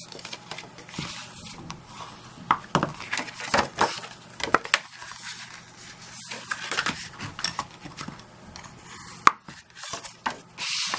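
White cardstock being handled and folded against a craft mat: papery rustles and scrapes with scattered sharp taps, the loudest a single tap near the end.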